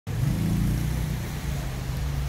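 A motor vehicle's engine running close by, a steady low-pitched hum.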